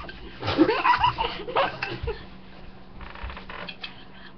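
Girls laughing and making wordless vocal sounds, with a burst of pitched, bending voice in the first half. Fainter breathy sounds follow near the end.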